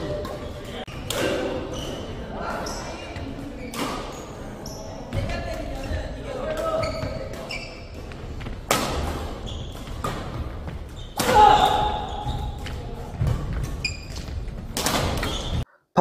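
Badminton rally in a large hall: sharp racket strikes on the shuttlecock every few seconds, with players' voices echoing around the court.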